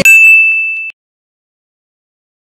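A single high-pitched ding, one steady tone held for just under a second and then cut off abruptly, followed by dead silence.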